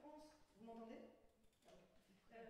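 Speech only: a woman talking into a handheld microphone, with a short pause about one and a half seconds in.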